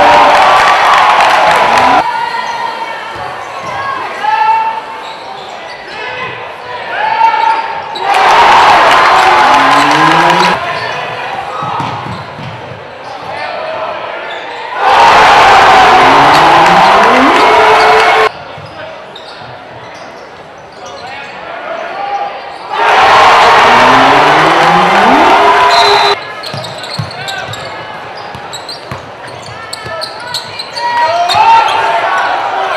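Game sounds in a gym: a basketball dribbling on the hardwood court and voices shouting. They are broken four times by loud crowd noise lasting about three seconds each, which starts and stops abruptly.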